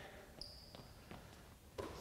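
A quiet gym with one short, high squeak of a sneaker on the hardwood court about half a second in, falling slightly in pitch, and a faint knock soon after.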